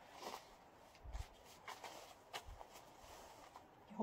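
Near silence with a few faint, scattered clicks and rustles of oracle cards being handled and laid down on a stone, and a couple of brief low thuds.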